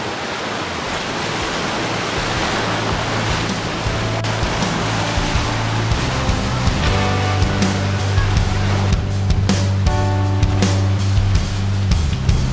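Surf washing and breaking over jetty rocks. Background music with a steady bass line fades in about four seconds in, and its beat grows louder toward the end.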